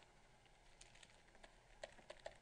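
Near silence with a few faint, light clicks in the second half: a stylus tapping and writing on a pen tablet.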